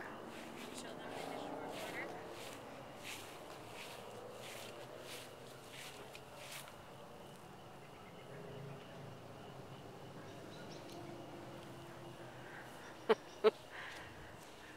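Quiet outdoor ambience with a faint, steady high-pitched tone and scattered soft ticks, then two sharp clicks about half a second apart near the end.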